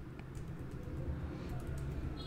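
Typing on a computer keyboard: a handful of scattered keystrokes over a low steady hum.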